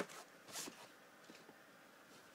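Faint handling noise from a VHS cassette and its black plastic case: a click at the start, then a brief rasping scrape about half a second in.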